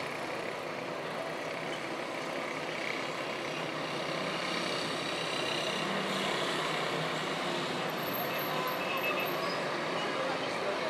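City street ambience: a steady, mixed hum of road traffic, a little louder in the second half.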